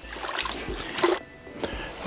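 Water sloshing and trickling in a wash bucket as a microfiber wash mitt is dipped into rinseless car-wash solution.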